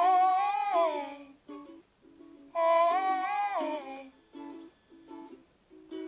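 Ukulele picked in a light repeating pattern under a high wordless vocal line. The voice comes in two long phrases a couple of seconds apart, each sliding down in pitch at its end.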